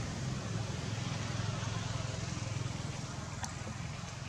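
Steady outdoor background noise: a low rumble with a hiss over it, and one faint click near the end.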